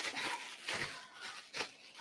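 Clear plastic bag rustling and crinkling as gloved hands handle it, in a few faint bursts.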